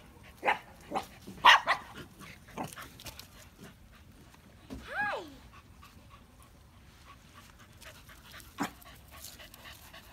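Small dogs barking and yipping during rough play. There are a few short sharp barks in the first two seconds, one longer call that falls in pitch about halfway through, and another single bark near the end.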